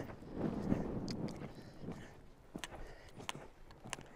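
Horse cantering on a sand arena, its hoofbeats soft and muffled, with a few sharp, irregular clicks in the second half.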